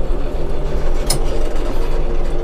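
Tümosan 6065 tractor's diesel engine running steadily while under way, heard from inside the closed cab as a constant low hum. A single short click comes about a second in.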